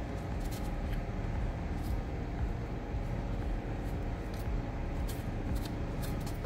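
Steady low background hum, with faint soft rustles and light clicks as material is added into a container sitting on a lab balance.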